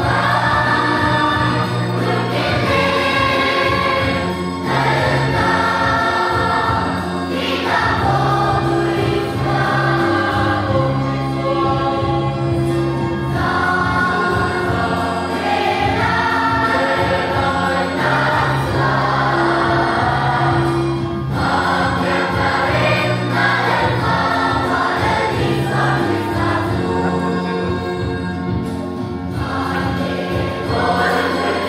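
Children's choir singing a Christmas song, with electronic keyboard accompaniment holding steady low notes underneath.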